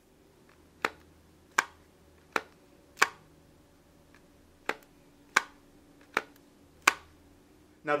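Nokia E7's sliding QWERTY keyboard being snapped open and shut: eight sharp clicks, about one every three-quarters of a second, in two runs of four with a short pause between.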